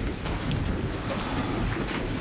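A congregation sitting down together: an even wash of rustling and shuffling noise with a low rumble and a few faint knocks.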